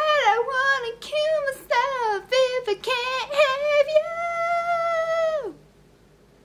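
A girl singing unaccompanied in a deliberately over-the-top style: short warbling runs that swoop up and down in pitch, then one long held note that falls away and stops near the end.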